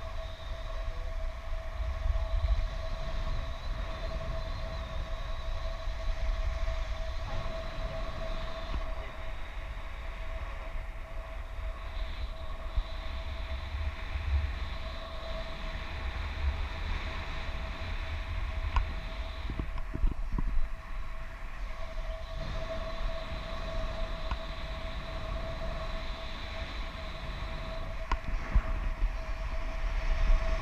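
Wind rushing and buffeting over an action camera's microphone in paragliding flight, a steady low rumble that swells and eases, with a steady thin high tone running through it.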